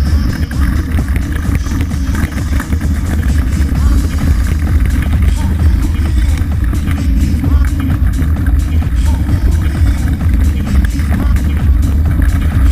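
Wind buffeting a bike-mounted action camera's microphone, with the rumble and rattle of mountain bike tyres rolling over a loose gravel track.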